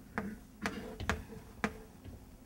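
Chalk writing on a chalkboard: about four sharp taps as the chalk strikes the board, each followed by a short scrape.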